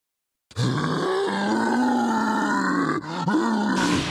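Golden Great Ape's roar, a deep processed monster roar from an anime. It starts abruptly about half a second in, holds for over two seconds and falls in pitch as it ends, then a shorter second roar follows near the end.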